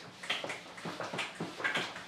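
Whiteboard eraser wiping marker off the board in quick back-and-forth strokes, about three a second.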